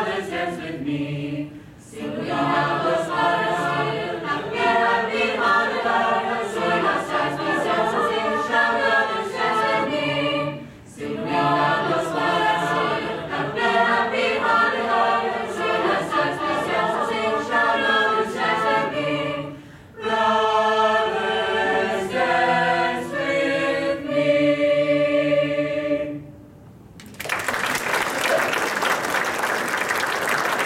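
High-school mixed choir singing in harmony, with brief breaks between phrases and a run of short, separated chords to close the song. About three seconds before the end the singing stops and audience applause takes over.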